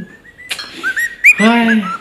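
Cockatiel whistling a song: a run of short whistled notes that each hook upward, after a faint held note. A man's voice exclaims over the last half second.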